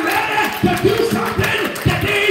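A male preacher's loud, half-sung, chanted preaching, his voice held and bending in pitch, with the congregation calling back.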